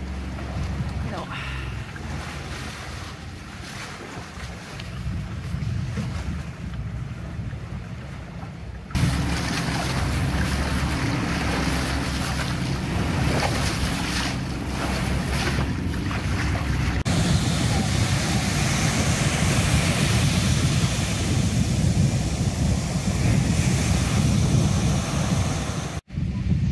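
Wind buffeting the microphone and water rushing past the hull of a sailing boat underway. The noise jumps louder and brighter at two edits, about nine seconds in and again about eight seconds later.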